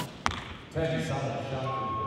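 A recurve bow shot: a sharp snap as the string is released, then the thud of the arrow striking the target about a quarter second later. A drawn-out voice-like sound follows, with a steady tone near the end.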